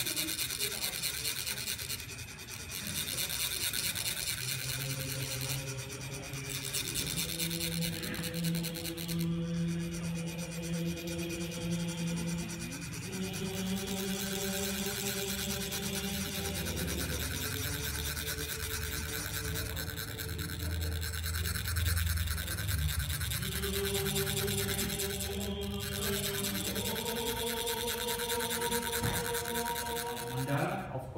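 Chak-pur, the ridged metal sand funnels used for Tibetan sand mandalas, being rubbed with a metal rod so that the vibration trickles the coloured sand out: a continuous fine rasping. Low held tones that change pitch every few seconds sound underneath.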